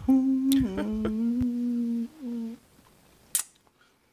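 A woman humming one long, steady note for about two seconds, then a short second note, with a single click a little after three seconds in.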